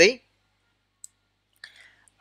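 A single faint, short click about a second in, amid near silence after a man's word ends.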